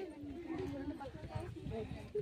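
Background chatter of several people, women's and children's voices talking over one another, with an irregular low rumble beneath.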